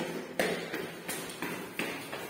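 Footsteps in sandals going down concrete stairs, several separate steps about every half second.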